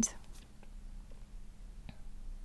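Quiet room tone with a faint steady low hum, just after the tail of a spoken word at the start; a single faint click comes just before the end.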